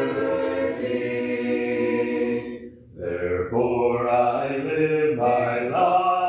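Congregation singing a hymn a cappella, unaccompanied voices holding long notes, with a short breath pause between lines just before halfway.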